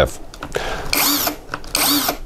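Interskol GAU-350-18VE cordless impact wrench's brushless motor spinning with no load in its unscrewing mode, running up briefly twice, about a second in and near the end, and cutting off each time by itself: the auto-stop of the reverse mode when running free.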